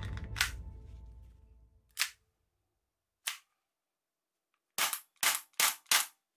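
Sharp plastic clicks from a toy pistol being loaded and shot: a magazine snapping into the grip, two single clacks, then four quick snaps about 0.4 s apart near the end.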